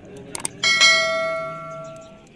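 Two quick clicks, then a bright bell chime that rings and dies away over about a second and a half. This is the click-and-bell sound effect of a YouTube subscribe-button animation.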